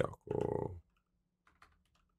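Typing on a computer keyboard: faint, scattered key clicks in the second half.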